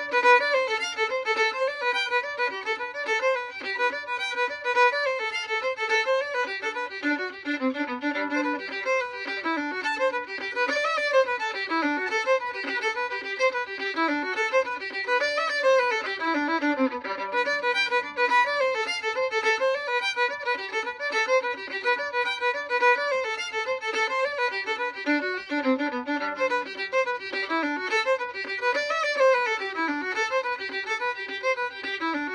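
Solo fiddle playing a quick, unaccompanied fiddle tune in a steady stream of short bowed notes, its phrases coming round again every several seconds.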